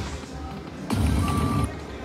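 Slot machine game sounds over its background music as the reels spin. About a second in, a sudden burst of effects with a short held tone, as the reels stop on a small line win.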